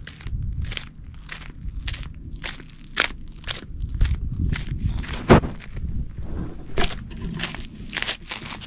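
Footsteps crunching on a gravel trail, about two steps a second, over a low rumble.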